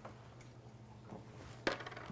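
Quiet room tone with a faint steady low hum and one light click near the end, from small parts being handled at the wheel's valve stem.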